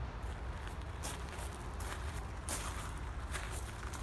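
Footsteps on gravel as someone walks along, a step roughly every three-quarters of a second, over a steady low rumble.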